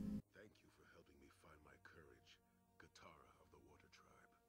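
Near silence, with very faint, muffled speech running underneath.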